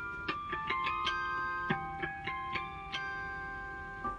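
Korg Pa1000 arranger keyboard playing a loaded guitar-harmonics soundfont sample. About ten notes are picked out one at a time, each ringing on long and overlapping the next.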